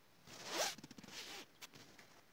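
Quick zipper-like ripping rasps, two main strokes over about a second, with a couple of short clicks near the end.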